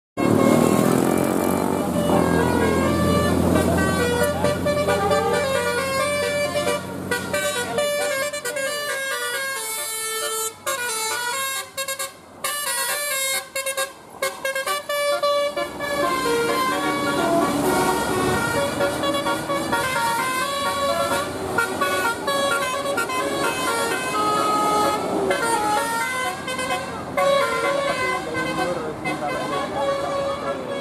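Tour bus telolet horn of the Basuri type, its electric air-horn trumpets playing a tune of quick stepped notes, with a few short breaks near the middle. A bus engine runs low under the first few seconds.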